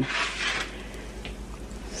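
Corn dogs deep-frying in hot oil, a steady sizzle that is louder for about the first half-second and then settles to a soft, even hiss, with a faint click of the tongs a little past one second in.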